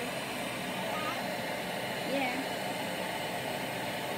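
Electric stick vacuum cleaner running steadily, with its motor holding one even hum and hiss.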